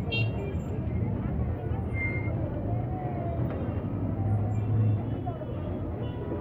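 Congested street traffic close by: a steady low rumble of vehicles, swelling a little near the end, with people's voices in the background.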